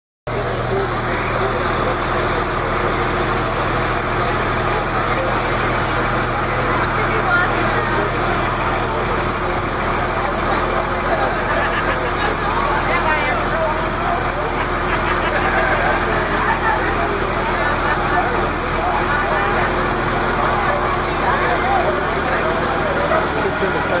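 Fire engines running at a slow parade pace, a steady low engine drone that is strongest in the first half, amid the chatter of a crowd of onlookers.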